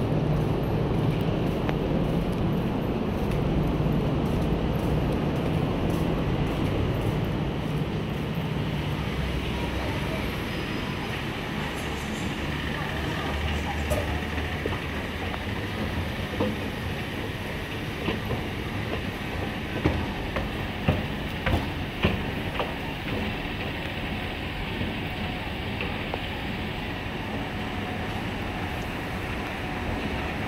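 A deep rumble that eases after about ten seconds, then the running noise of a moving escalator with scattered sharp clicks partway through.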